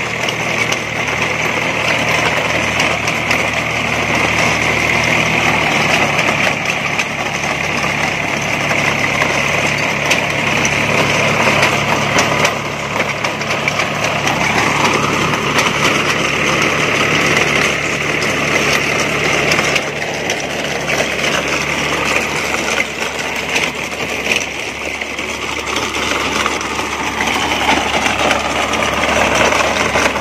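Tractor diesel engine running under load, driving a tractor-mounted chain trencher whose cutting chain churns through soil as it digs a trench. The sound is steady and continuous throughout.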